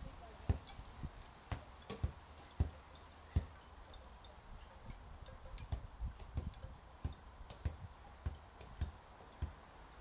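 A football being bounced by hand, a series of dull thuds about one to two a second, with a short pause in the middle.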